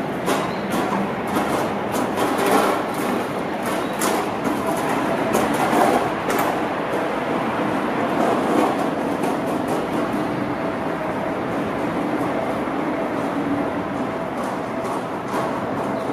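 Electric commuter trains running on the line, the wheels clacking sharply over rail joints and points for the first several seconds, then a steadier rumble with a faint steady whine.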